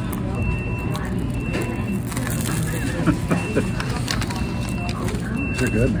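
Steady hum and background murmur of a small restaurant, with faint voices, and a short high beep repeating about once a second.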